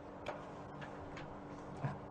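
Quiet pause in a room: a faint steady hum with a few faint, unevenly spaced ticks.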